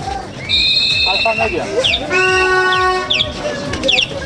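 Protesting cyclists blowing whistles and sounding a horn: a long shrill whistle about half a second in, then a steady horn note lasting about a second near the middle, with voices in the crowd.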